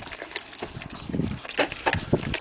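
Dog eating dry kibble from a plastic bowl: irregular crunches and clicks as it chews and noses about the bowl for the last pieces.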